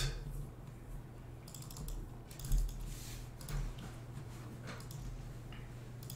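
Light typing on a computer keyboard: scattered soft key clicks over a faint steady low hum.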